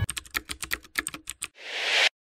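Computer keyboard typing sound effect: a quick run of about a dozen key clicks, then a short hiss that swells and cuts off abruptly.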